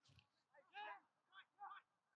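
Near silence, with faint distant voices of players calling out a couple of times.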